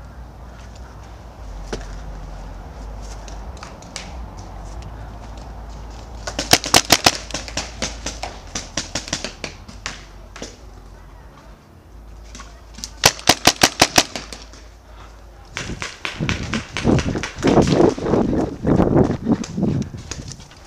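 A magfed paintball marker firing two rapid strings of shots, about six to eight a second, roughly six seconds apart. Near the end, irregular heavier crunching thuds follow: the player moving over gravel.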